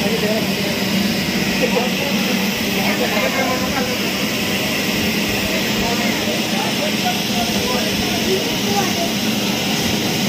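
A mechanical bull ride's machinery running with a steady, even drone and low hum, with faint voices behind it.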